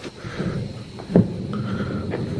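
A thump about a second in, then a steady low rumble: the wheels under a plastic trough rolling on concrete with a man riding inside it.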